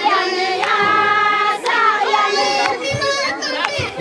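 A group of high voices singing together, with a few sharp claps scattered through.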